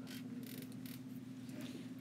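Faint room tone: a steady low hum under light hiss, with a faint brief rustle or tick about half a second in.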